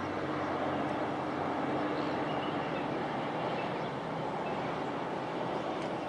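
Steady rushing outdoor noise with a faint low hum that fades out about halfway through, and a few faint high bird chirps.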